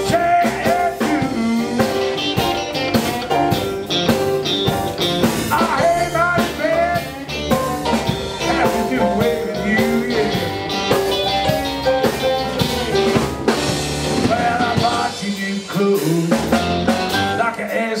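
A live blues band of electric guitar, keyboards, bass guitar and drum kit playing an instrumental passage between sung verses, with no vocals.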